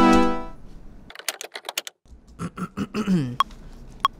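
Synth-pad and drum-beat playback cuts off about half a second in, followed by a quick run of computer keyboard and mouse clicks and a brief low sound sliding down in pitch. Near the end a DAW metronome count-in starts, short pitched ticks about two-thirds of a second apart, at the session's 93 BPM, before recording.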